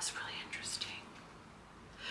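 A woman's faint breathy, whispered vocal sounds in the first second, trailing off into quiet room tone.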